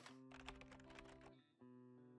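Faint logo-intro music: soft held notes stepping from one pitch to another, with quick light clicking ticks over them. It drops out for a moment about three quarters of the way through, then a note comes back.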